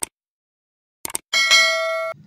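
Mouse-click sound effects, a single click and then a quick double click about a second in, followed by a bright notification-bell ding that rings on for under a second.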